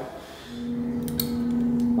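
A steady, even-pitched machine hum starts about half a second in and slowly grows louder, with a few light clicks a little later.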